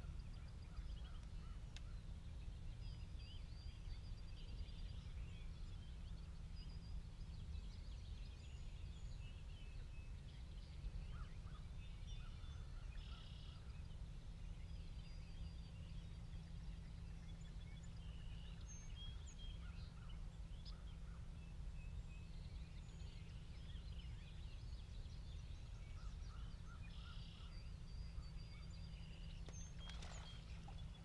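Birds calling faintly, scattered chirps and short calls with two denser bursts of calling about halfway through and near the end, over a steady low rumble.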